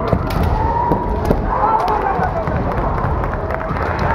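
Kendo fencers' drawn-out kiai shouts, sliding down in pitch, with a few sharp clacks in the first second or so, typical of bamboo shinai meeting, echoing in a gym hall.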